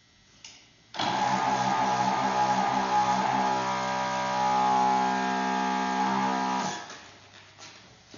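Electric balloon inflator starting abruptly about a second in and running with a steady hum for nearly six seconds as it fills a long modelling balloon, then winding down.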